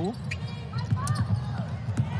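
A basketball dribbled on a hardwood court, several sharp bounces as it is pushed up the floor on a fast break, over a steady low background noise.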